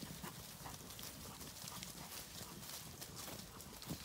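Faint, irregular footfalls on grass from a small flock of Zwartbles sheep trotting and a person walking behind them, with one sharper tap just before the end.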